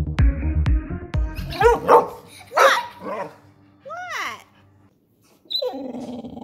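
Music with a steady beat for the first two seconds, then a young Rottweiler 'talking back': several short dog vocalisations that rise and fall in pitch, separated by brief pauses.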